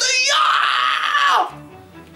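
A man's long, angry wordless yell, held steady for over a second and then falling in pitch as it dies away, acting out a man in a rage, over background music.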